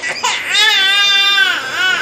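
A baby crying: a short cry at the start, then one long high wail lasting about a second, then shorter cries near the end.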